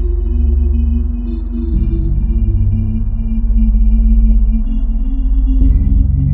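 Dark ambient background music: low droning chords under thin, steady high tones, the chord changing about two seconds in and again near the end.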